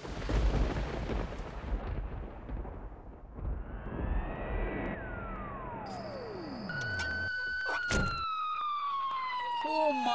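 Low rumble, then a tone that rises and drops steeply in pitch. About seven seconds in, a police siren's long wail sets in, sliding slowly down in pitch, and breaks into a rapid yelp at the very end.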